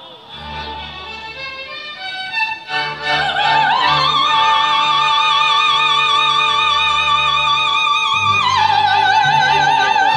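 Female opera singer with a symphony orchestra. After a quieter orchestral stretch, her voice comes in about three seconds in and glides up into a long, high note with wide vibrato. She holds it for about four seconds, then steps down to a lower note near the end.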